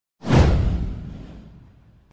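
A whoosh sound effect with a deep low boom under it, starting sharply just after the start and fading away, falling in pitch, over about a second and a half.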